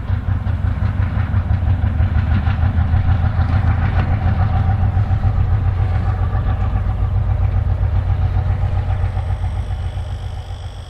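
Soviet 2TE10L two-section diesel locomotive passing slowly, its 10D100 two-stroke opposed-piston diesel engines making a steady low drone. It is loudest in the middle and eases a little near the end.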